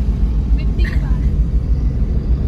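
A car's engine and tyres heard from inside the cabin while driving on a road, a steady low rumble.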